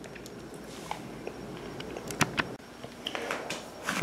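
Faint scattered clicks of a North American Arms Sidewinder mini-revolver being handled as its cylinder is unlatched and swung out, with a sharp double click about two seconds in.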